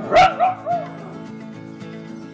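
A dog barking: one sharp bark followed by two shorter, wavering yelps, all within the first second, over background music.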